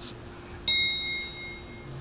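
A single bright ding, a bell-like sound-effect chime struck once about two-thirds of a second in and ringing out for over a second. Under it runs a faint steady low hum.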